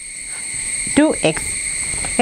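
Marker pen rubbing across a whiteboard as a short line of symbols is written, a soft scratchy noise. Under it runs a steady high-pitched background drone.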